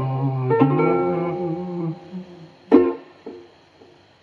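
Ukulele chords strummed and left ringing to close a song. About three seconds in comes one sharp final strum that dies away quickly.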